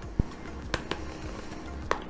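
Hard plastic model seat parts clicking and tapping a few times as they are handled and pressed together by hand, over soft background music.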